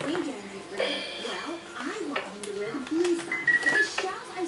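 A baby babbling and cooing in short rising and falling sounds, with a brief high electronic beep tune from a light-up toy piano near the end.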